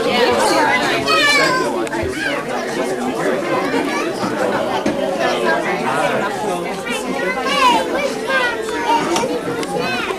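Overlapping chatter of a crowd of young children and adults, many voices talking at once with high children's voices standing out, none clear enough to make out words.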